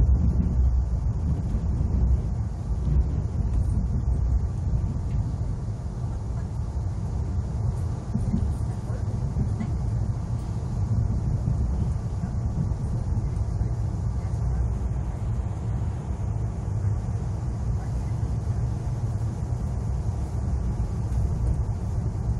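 ITX-Saemaeul electric multiple-unit train running at speed, heard from inside the passenger car as a steady low rumble.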